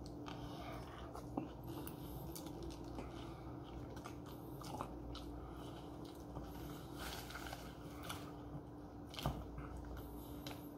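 Close-miked biting into a grilled tortilla wrap, then chewing with scattered small crunches and clicks, faint over a steady low hum.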